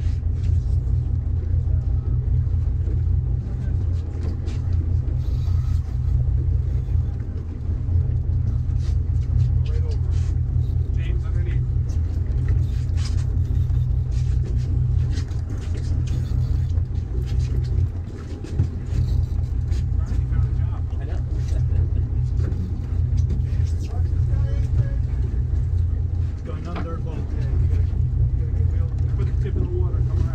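Fishing boat's engine running steadily at low revs, a deep rumble that eases briefly twice, with indistinct voices over it.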